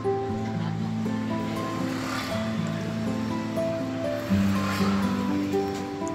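Background music of held, slowly changing chords, with two swelling washes of noise about two and five seconds in.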